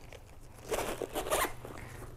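A few quick rustling, rasping strokes from handling a leather handbag off camera, lasting under a second from a little past halfway in.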